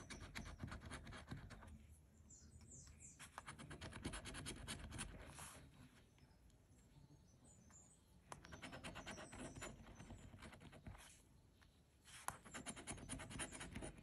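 A coin scraping the scratch-off coating from a lottery ticket in faint bouts of quick back-and-forth strokes, stopping briefly a few times.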